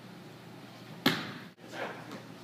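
A football smacking into a receiver's hands: one sharp crack about a second in, with a short echo from the large indoor hall.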